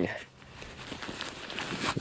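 Fabric rustling as a stuff sack holding a rolled sleeping pad is handled, over wind noise, getting louder near the end.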